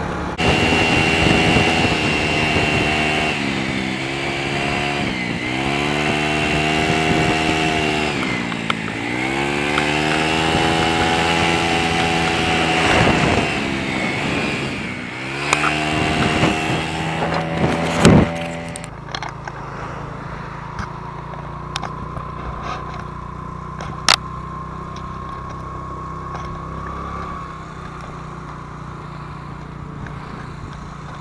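Small motorbike engine running under way, its pitch rising and falling over several seconds as it speeds up and slows on the road, with wind rushing over the microphone. About two-thirds of the way through the wind noise drops away, leaving a steadier, quieter engine hum.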